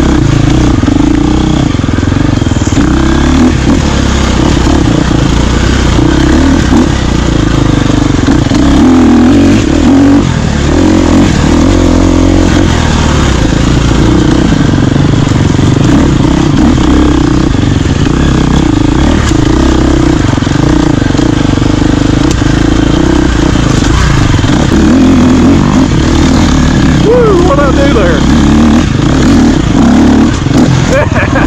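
Dirt bike engine running loud and close on the bike carrying the camera, its revs rising and falling continuously as it is ridden over rough trail, with brief rising revs near the end.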